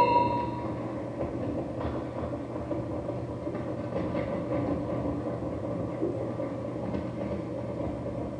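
Live dark ambient ritual noise: a dense, steady rumbling drone over a low hum, with a ringing tone at the very start that fades within about half a second and a few faint knocks later on.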